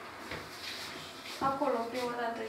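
A man's voice: a drawn-out, held vocal sound begins about one and a half seconds in, after a stretch of low-level room noise.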